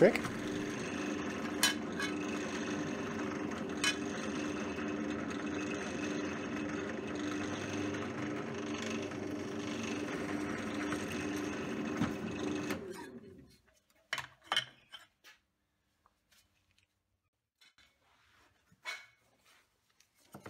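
Bench drill press motor running at a steady hum while a 6 mm hole is drilled through a small steel plate clamped in a vise. About 13 seconds in it is switched off and winds down, followed by a few faint clicks and knocks.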